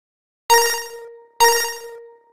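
Two identical bright bell-like chime strikes, a little under a second apart, each ringing at one steady pitch and fading away: an edited-in chime sound effect.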